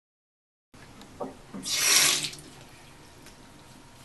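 Water from a bathroom sink tap running in a short gush of under a second about two seconds in, with a small knock just before it.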